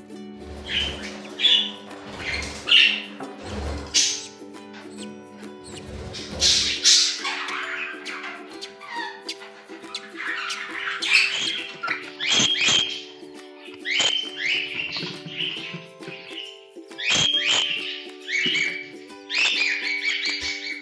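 Budgerigar calls, short and repeated every second or two, over background music with long held notes.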